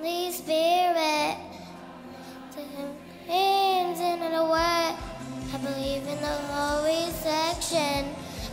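Young girls singing into a microphone over backing music, with long held, wavering notes. A steady low beat comes in about halfway through.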